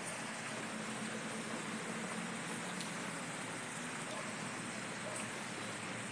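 Steady, even hiss of falling rain, with a faint low hum underneath.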